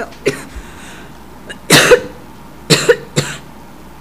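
A person coughing: one loud cough a little under two seconds in, then two more coughs close together about a second later.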